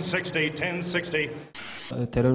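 An auctioneer calling bids over a microphone, his voice cut off about one and a half seconds in by a short burst of static-like hiss.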